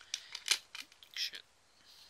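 Blu-ray disc being pulled off the hub of its plastic case: a few short plastic clicks and scrapes, the loudest about half a second in.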